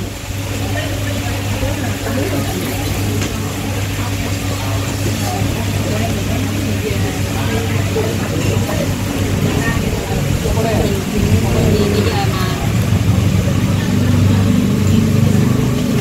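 Busy restaurant ambience: indistinct voices of other diners over a steady low hum.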